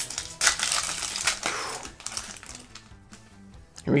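Foil trading-card booster pack wrapper crinkling and tearing as it is ripped open, a dense crackle loudest in the first two seconds, then fading to a few soft rustles.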